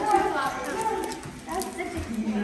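Indistinct chatter of children's voices at a table, with a few light clicks and taps mixed in.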